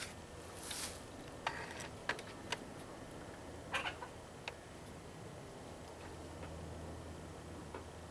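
A few light metal clicks and taps from a hand-held buckshot mold being handled and filled at the spout of a lead-melting pot, about five sharp ticks in the first half, over a faint steady low hum.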